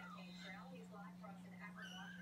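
Ragdoll kittens mewing faintly: a few short, high-pitched mews that rise and fall, over a steady low hum.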